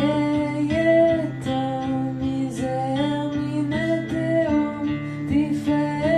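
Acoustic guitar played live with steady strummed and picked chords, with a voice singing a smooth, sustained melody over it.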